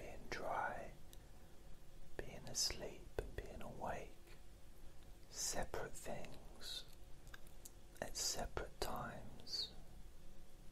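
A man whispering softly close to the microphone, the whispered words broken by several crisp, hissing 's' sounds.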